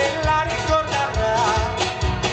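Live band music: strummed acoustic guitars and electric guitar over a steady low beat, with a man singing the lead.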